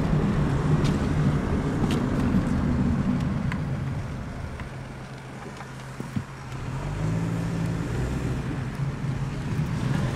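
Car engine and road noise heard from inside the moving car's cabin. The hum eases off and quietens through the middle, then grows louder again about seven seconds in, with a single brief click just before.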